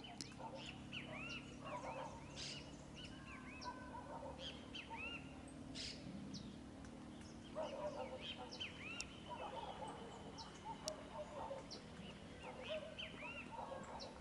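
Several birds calling: quick, arching chirps repeat all through, with clusters of lower calls about a second in and again from around the middle on.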